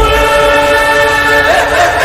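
A loud, sustained horn-like chord of several held notes, one note stepping up about one and a half seconds in: a dramatic film-score sound laid over the picture.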